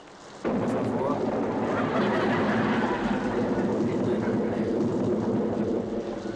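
A sudden, loud rush of water spraying down like heavy rain starts about half a second in and keeps going steadily, with voices mixed in under it.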